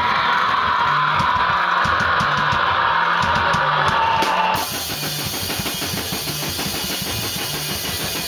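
A band playing live: a distorted guitar riff over drums. A loud sustained high sound rides over the riff and cuts off abruptly a little past halfway, leaving the music somewhat quieter.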